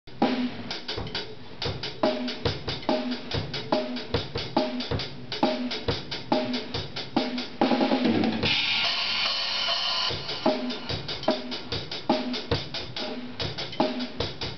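A drum kit played by a young drummer: bass drum, snare and cymbals keep a steady beat. Just before the middle, a quick fill leads into a cymbal crash that rings for about two seconds, then the beat picks up again.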